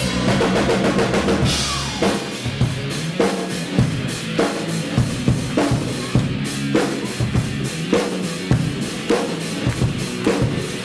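Hard rock band playing live, the drum kit most prominent. For the first two seconds the full band plays with heavy bass; then the bass thins out and the drums carry on alone in a steady beat of about two hits a second, with kick, snare and cymbals over thinner guitar.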